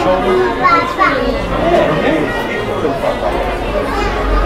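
Background chatter of shoppers in a store: several voices talking over one another at a steady level.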